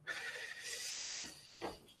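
Faint rustling of clothing against a clip-on lavalier microphone as the wearer moves, with a short soft click near the end.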